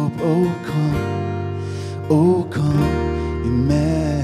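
Live worship song: a man singing, strumming an acoustic guitar, over sustained low notes. His held notes waver with vibrato at the ends of phrases.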